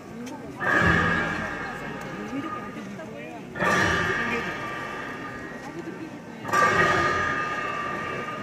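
Ritual cymbals clashed with a drumbeat for a masked monastic dance: three strokes about three seconds apart, each a sudden crash with a low thud that rings on with steady metallic tones and fades slowly.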